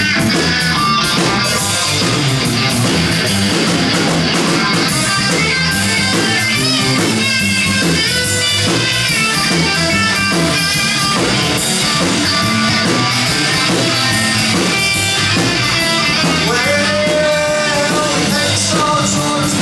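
Live rock band playing: an electric guitar takes a lead solo with bent notes over bass guitar and a drum kit.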